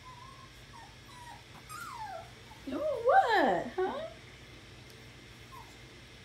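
Young puppy whining: a few faint, high whimpers, then about three seconds in a louder run of wavering whines that swoop up and down in pitch for about a second and a half.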